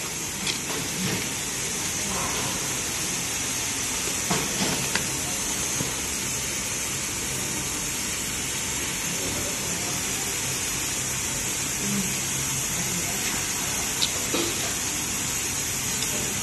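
Steady hiss and low hum of a running automatic box cartoning machine and its conveyor, with a few faint clicks of cardboard boxes being handled.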